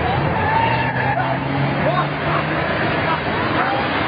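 Roadside onlookers shouting and talking over the engine noise of a minibus being drifted sideways past them, with a steady low engine hum for a second or two in the middle.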